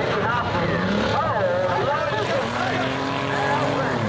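Several enduro race cars' engines running and revving together as the pack goes round, their pitch rising and falling, with people's voices mixed in.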